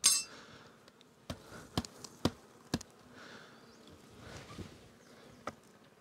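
Honey bees buzzing faintly around an open nucleus hive, with a short metallic clink at the very start and several sharp clicks and knocks as the hive tool and wooden frames are handled.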